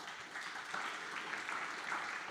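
Audience applauding, the clapping beginning at once and holding steady.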